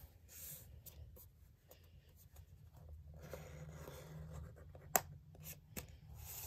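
Paper being folded and creased by hand on a cardboard board, with soft rustling and the sliding rub of fingers pressing down a fold. There is a sharp click about five seconds in.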